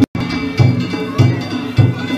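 Danjiri festival music: a drum beaten in a steady rhythm, about one heavy stroke every 0.6 seconds, with small hand-held gongs (kane) ringing over it. The sound cuts out for a split second at the very start.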